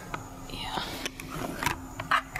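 Faint whispering in a quiet room, with a few small clicks and a soft intermittent hum.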